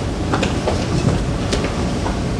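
A steady low rumble with a few faint ticks, and no speech.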